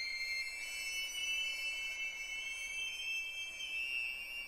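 String quartet holding very high, thin sustained notes that slowly slide in pitch, with one line rising near the end; there is almost nothing in the low register.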